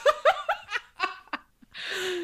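Two women laughing together: a quick run of short laughs that trails off into a breathy out-breath near the end.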